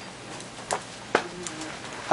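Quiet room tone broken by two light clicks a little under half a second apart.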